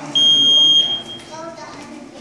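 A single steady, high-pitched electronic beep, a little under a second long, from a match timer signalling the start of a grappling bout.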